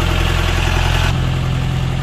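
Open jeep's engine running steadily at low revs, a constant low drone with no change in pace, as it idles or creeps along slowly.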